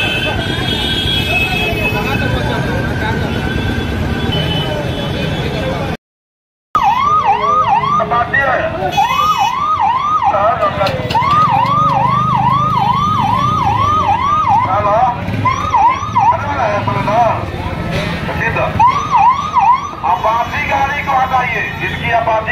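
Busy street noise with voices, then, after a brief silent gap, a police car's siren yelping in quick repeated rising sweeps, coming in several short bursts.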